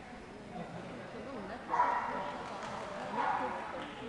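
A dog barking twice, about a second and a half apart, over a murmur of voices.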